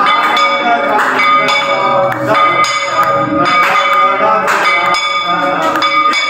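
Temple bells rung over and over during an aarti, with uneven, overlapping strikes about once or twice a second that leave a lasting metallic ring. Voices sing or chant underneath.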